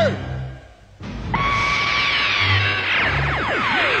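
Cartoon soundtrack: the tail of a shout. Then, after about a second, dramatic background music starts, with an eerie effect of many falling whistling tones over a held high tone.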